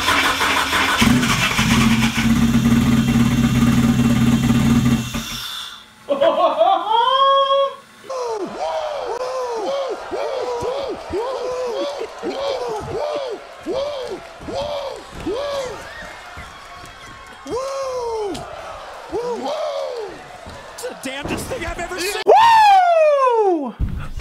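Mitsubishi Lancer Evolution 4G63 four-cylinder cranking, catching about a second in and running rough for a few seconds before cutting off abruptly. The fix to the coil-pack firing order has worked, but the engine has no tune and its ignition timing is not yet set. It is followed by a string of wavering tones and laughter.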